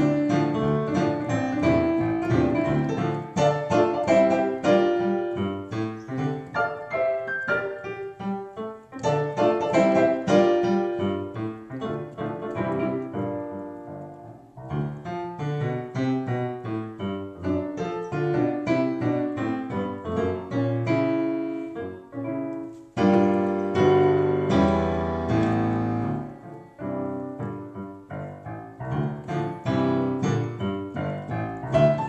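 Digital piano played with both hands, a solo piece with a bass line under the melody. It thins out and grows quieter partway through, then comes back louder and fuller.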